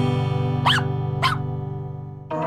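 Intro jingle: a ringing guitar chord slowly fading, with two short dog barks about half a second apart near the middle.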